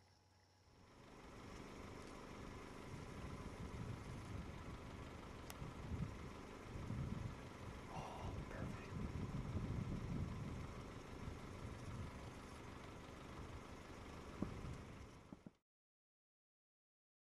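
Steady low rumble of an idling vehicle engine with a faint hum, starting about a second in. A brief higher call-like sound comes about halfway, and everything cuts off suddenly near the end.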